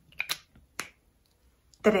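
Quick, sharp plastic clicks of a whiteboard marker's cap being snapped shut: a close pair, then a single click. Near the end a woman's voice begins.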